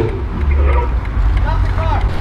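Low, steady rumble of a car heard from inside the cabin as it pulls up, with faint voices in the background.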